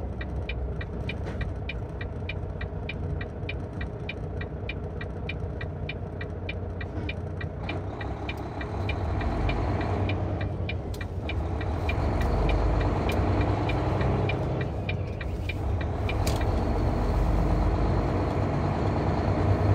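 Car's turn-signal indicator ticking steadily over a low idling engine rumble while waiting to turn left. About halfway through, the car pulls away through the turn: the engine rumble grows louder and the ticking stops soon after.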